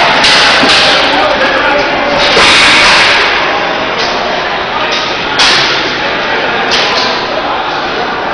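Loud commotion of shouting voices echoing in a large hall, broken by several sudden loud bursts.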